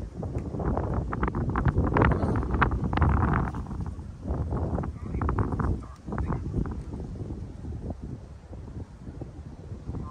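Repeated cracks and knocks of a Kenmore vacuum powerhead's plastic housing being smashed and broken apart, loudest and most frequent in the first few seconds, then sparser. Wind rumbles on the microphone throughout.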